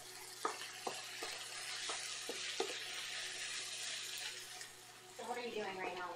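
Fried rice sizzling in a skillet while a wooden spatula stirs it, with a handful of light knocks of the spatula against the pan in the first few seconds.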